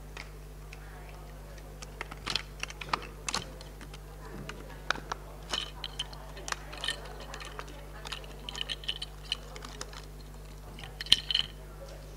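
Irregular clicks, taps and rustles of people moving about and handling sheets of paper, over a steady low room hum, with a louder cluster of clicks about eleven seconds in.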